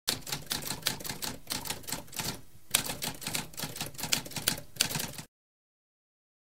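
Typewriter keys clacking in quick, uneven strokes, with a brief pause about halfway through, then stopping about five seconds in.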